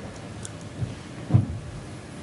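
Quiet meeting-room tone with two dull low thumps, a small one just under a second in and a louder one about half a second later.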